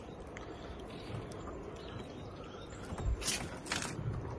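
Steady low wind and river-water noise out on open water, with two short hissing rushes about half a second apart near the end.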